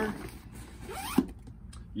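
Zipper on a Babolat Pure Drive 12-pack tennis racket bag being worked as a detached shoulder strap is stowed in a compartment, with rustling of the bag and one sharp click a little after a second in.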